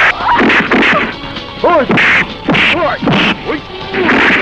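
Film fight sound effects: a rapid series of sharp punch and hit whacks, with grunts and yells from the fighters between the blows.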